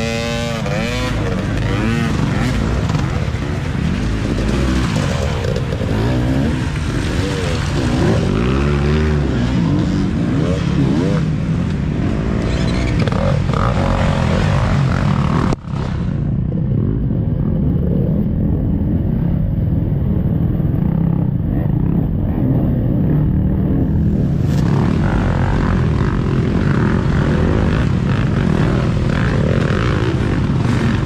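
Several dirt-bike engines revving and passing, their pitch rising and falling as riders work the throttle through muddy woods trail. About halfway through the sound cuts and for several seconds sounds duller before brightening again.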